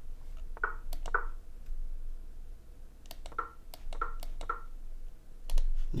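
Computer mouse clicking quickly, about ten short clicks in small clusters, as chess pieces are moved in a fast online game under severe time pressure.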